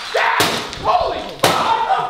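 Two loud slamming impacts about a second apart, a man smashing things around a room.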